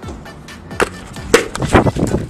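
A helmet swung down onto a man's helmet with a sharp knock, then scuffing and knocking as he tumbles off a small bicycle to the ground. Music plays under it.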